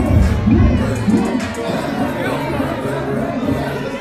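Concert crowd shouting and cheering over a loud rap track with a heavy bass beat playing through the venue's sound system, recorded from inside the crowd.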